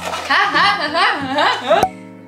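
Talking and laughing voices over background music, with a sharp click near the end.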